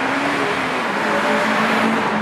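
Road traffic: a steady rush of tyre and engine noise from passing cars, one vehicle's engine swelling louder near the end as it passes.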